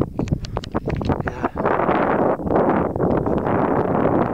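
Wind buffeting the camera microphone: a loud, rumbling rush with crackles over the first second and a half.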